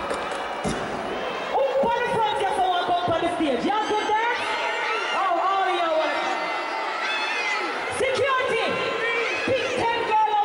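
A person's voice calling out in drawn-out phrases over the noise of a concert crowd in a large hall, starting about a second and a half in.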